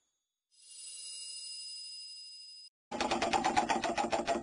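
Intro sound effects: a high, steady bell-like ringing tone holds for about two seconds and cuts off abruptly. After a brief silence, a loud, rapid clatter of sharp mechanical clicks starts, about five a second.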